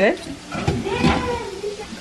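A chef's knife slicing through grilled steak and knocking on a plastic cutting board, a few short cuts.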